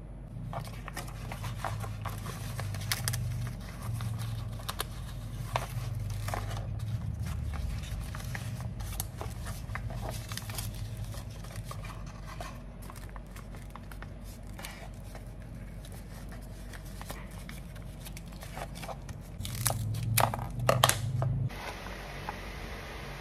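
Wrappers crinkling and rustling as portions of glutinous rice with beef floss are folded into parcels by hand. The crackles come irregularly, with a louder run of them near the end.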